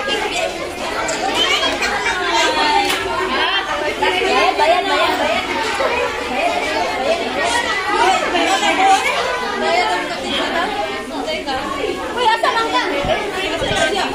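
Many voices of children and adults talking at once, a steady babble of chatter in a large room.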